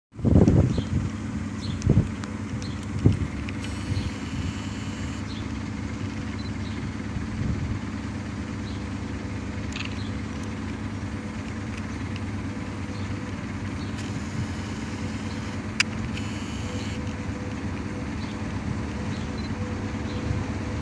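Steady low electrical hum of electric trains at a station platform, with a faint higher tone held throughout. A few loud knocks come in the first three seconds, and a single sharp click comes a few seconds before the end.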